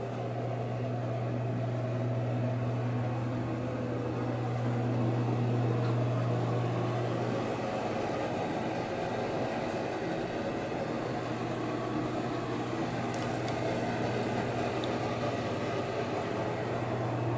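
Steady low mechanical hum of ventilation, with an even rush of air above it; the hum eases a little in the middle and is back near the end.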